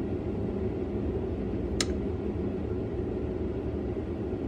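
Steady low hum and rumble of room noise, with one brief click about two seconds in.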